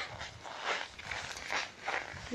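Footsteps on packed snow in hard frost, a regular run of soft steps about two or three a second.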